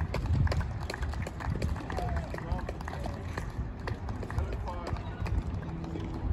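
Outdoor tennis-court ambience: voices in the distance, many scattered sharp clicks and knocks, and a steady low rumble.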